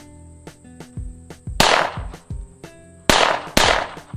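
Three 9mm shots from a Hi-Point C9 pistol: one about one and a half seconds in, then two about half a second apart near the end. The rounds are smokeless loads fired through a gun heavily fouled by Pyrodex, and it is cycling again. Background music with a steady beat plays throughout.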